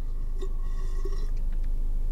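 A steady low background hum, with a few faint high tones in the middle and no distinct sound event.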